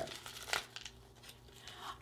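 Paper wrapping crinkling and tearing as a small package is opened by hand, in scattered faint crackles with one louder crackle about half a second in.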